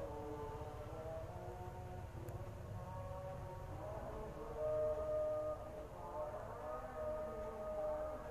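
A slow melody of long held notes, each steady in pitch and stepping to the next, with the loudest notes about halfway through, over a low steady rumble.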